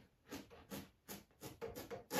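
Tape being peeled off a painted canvas in several short pulls: a quiet run of brief rips.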